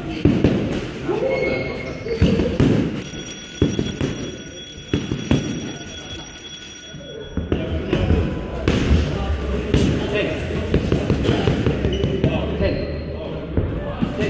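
Boxing gloves striking focus mitts in a run of repeated smacks during pad work, with voices talking over them.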